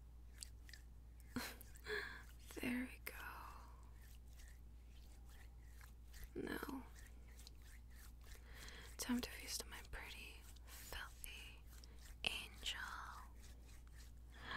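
Close-miked ASMR mouth sounds from a woman: many small wet clicks and lip smacks, broken by a few short, soft breathy vocal sounds and a whispered "very good" with a laugh.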